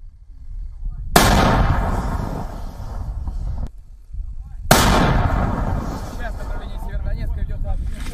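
Artillery gun firing twice, about three and a half seconds apart. Each shot is a sharp blast followed by a long rumbling echo that dies away over a couple of seconds.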